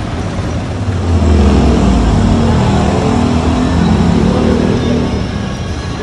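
Motorcycle engine of a Philippine motorcycle-and-sidecar tricycle pulling away, growing louder about a second in as it revs.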